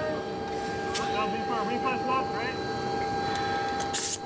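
Steady hum of machinery inside a submarine compartment, several held tones over a noisy background, with a click about a second in. Faint crew voices come and go for a second or so near the middle.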